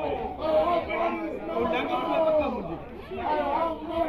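Chatter of several people talking, the words indistinct.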